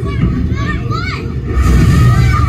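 High-pitched, child-like voices with pitch that rises and falls, over a steady low rumble inside the submarine cabin.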